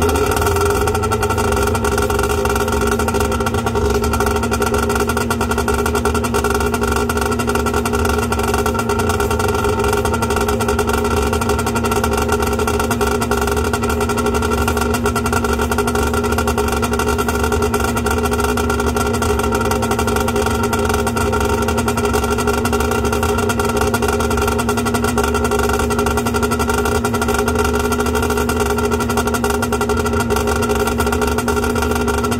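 1992 Sea-Doo GTS's two-stroke Rotax engine idling steadily out of the water on its trailer, just after being started so antifreeze can be pumped through it for winterizing.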